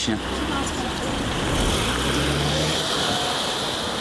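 Car engine as an SUV pulls away, its note rising briefly about halfway through, over street traffic noise.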